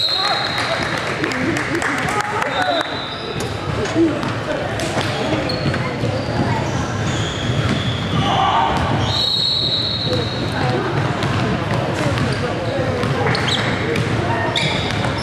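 Basketball being dribbled and bounced on a hardwood gym floor, with sneakers squeaking sharply a few times and the voices of players and onlookers echoing through the large hall.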